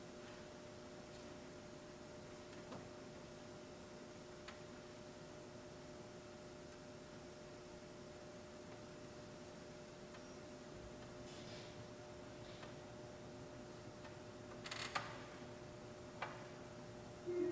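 Quiet room tone with a faint steady hum, broken by a few soft clicks and a brief louder rustle and click near the end.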